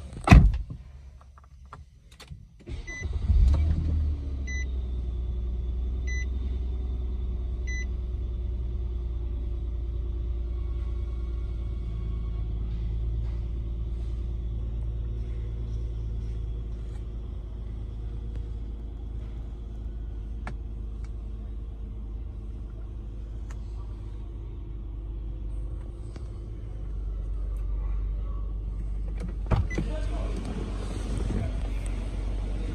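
A sharp knock, then the 2010 Nissan Maxima's 3.5-litre V6 starts about three seconds in, surging as it catches and settling into a steady idle heard from inside the cabin. A faint chime sounds four times, about one and a half seconds apart, just after the start.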